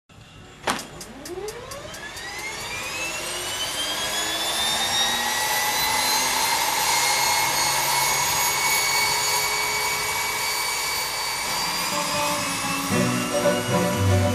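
A light aircraft's propeller engine starting: a loud click and a quick run of ticks in the first two seconds, then a whine that rises in pitch over about three seconds and settles into a steady run. Banjo music comes in near the end.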